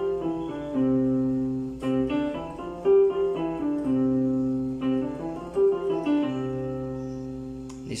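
Piano keyboard playing a five-finger fingering exercise with both hands: a steady run of single notes moving stepwise up and down, the two hands sounding together in parallel.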